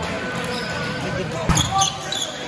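A volleyball being struck once with a sharp smack about one and a half seconds in, followed by brief high squeaks of sneakers on the hard court, over a murmur of voices in a large hall.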